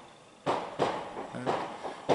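Fireworks going off: a sharp bang about half a second in, followed by a quick string of crackling pops.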